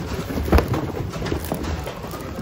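VHS tape cases and other thrift-store goods clattering and shuffling as a hand rummages through a bin, with one louder knock about half a second in.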